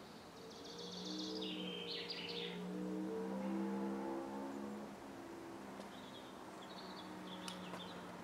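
Bird trilling calls in the first couple of seconds and again near the end. Underneath them run low, steady tones that step between a few pitches, and these are the loudest part.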